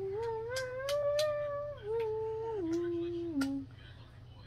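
A voice humming a short tune: a rising note held for about a second, then stepping down through three lower held notes and stopping about three and a half seconds in.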